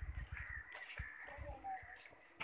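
A bird calling a few times over a low, fluctuating rumble.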